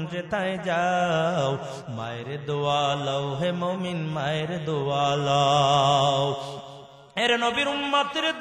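A man's voice chanting a sermon passage in a drawn-out melodic style, with long held notes and wavering ornaments. It fades out shortly before the end, and the voice comes back in just after.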